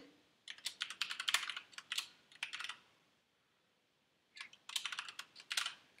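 Typing on a computer keyboard: quick runs of key clicks in two bursts, with a pause of about a second and a half between them, as a name is typed into a text field.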